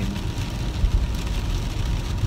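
Steady low rumble of road and tyre noise inside a moving car's cabin.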